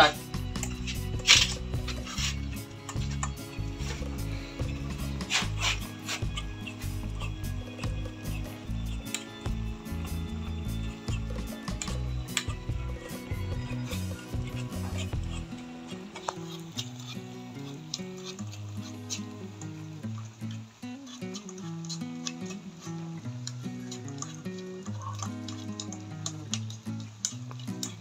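Background music with a slowly changing bass line that thins out about halfway through. A few sharp clicks stand out in the first half.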